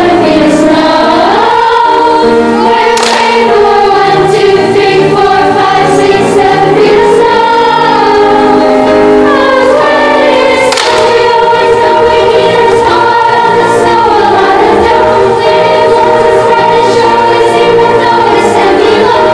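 Children's choir singing together, holding long notes.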